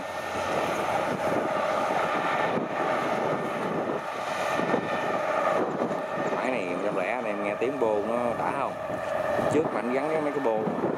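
Kubota DC-105X combine harvester's diesel engine and threshing drum running steadily as it cuts and threshes rice, a continuous drone with a held tone.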